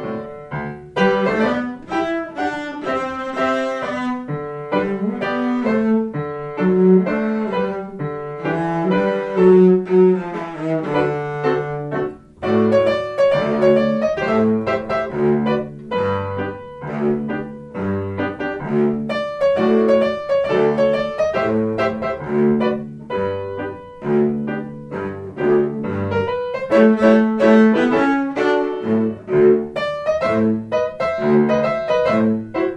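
Cello and piano playing a duet, the cello holding long low notes under the piano's chords and running notes.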